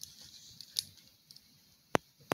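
Handling of plastic toy robot figures: faint scuffs and light clicks, with a sharper click a little under a second in and one loud, sharp click just before the end.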